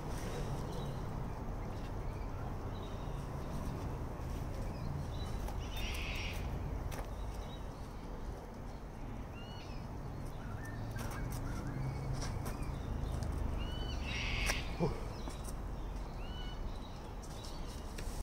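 Outdoor ambience of birds calling now and then, short chirps scattered throughout, with two louder harsh calls about six seconds in and near fifteen seconds, over a low steady rumble.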